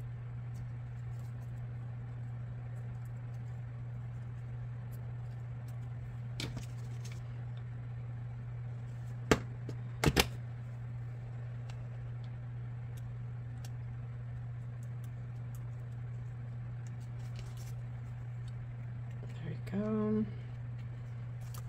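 A steady low hum with a few sharp clicks and taps about halfway through, from small paper pieces and metal tweezers being handled on a craft table.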